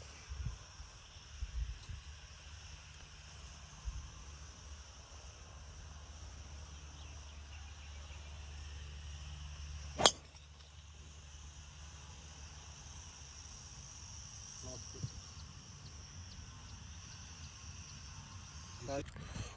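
A golf driver striking a ball off the tee: a single sharp crack about ten seconds in, over a steady chirring of insects.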